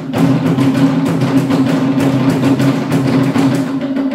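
Live percussion-led music for a traditional dance: fast, steady drumming over sustained low notes, the lowest of which drops out near the end.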